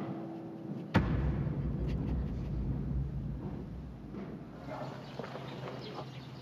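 A single sharp thump or slam about a second in, followed by a low steady rumble.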